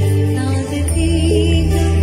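A woman singing a gospel song into a handheld microphone, her voice held and wavering over sustained low accompaniment, with a short breath gap about half a second in.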